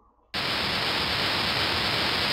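Steady hiss of recording noise that comes in abruptly about a third of a second in, right after a brief dead silence.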